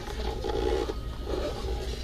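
Rubbing and scraping as a painted organizer box is tipped over and handled, over a steady low hum.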